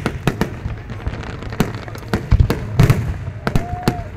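Aerial fireworks display: a rapid, irregular run of about a dozen loud bangs from bursting shells over a low rumble, the bangs heaviest a little past the middle.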